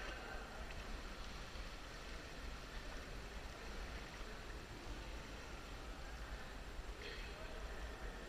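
Steady low rumble and hiss of background noise in a limestone cave, with faint distant voices near the end.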